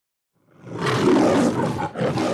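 A lion's roar sound effect. It starts about half a second in and cuts off sharply after about two and a half seconds.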